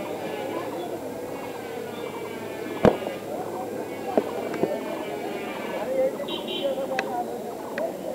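Indistinct voices talking in the background, with a sharp click about three seconds in and a few fainter clicks later.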